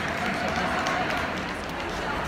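Indistinct chatter of many people at once, a steady crowd murmur with scattered faint clicks.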